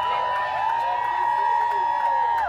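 A crowd of fans screaming and shouting, several high voices holding long calls at once.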